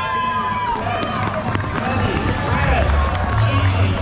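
A crowd of children and adults running on pavement, with footfalls, children's shouts and chatter. A held shrill tone ends just under a second in.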